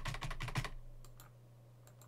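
Computer keyboard keystrokes: a quick run of about eight key clicks in the first second, then a couple of faint single clicks.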